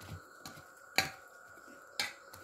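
Stainless steel bowl clinking against a steel plate while food is served out of it: a few short sharp clinks, the loudest about a second in.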